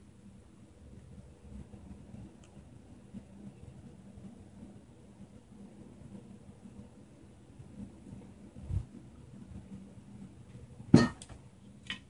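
Quiet kitchen room noise while food is handled on foil, with a dull thump past the middle and a sharp knock about a second before the end.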